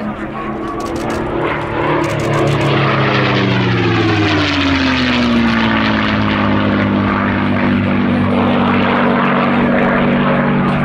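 P-51D Mustang's Packard Merlin V12 engine and propeller on a display pass, growing louder about three seconds in and dropping in pitch as the aircraft goes by, then running steady.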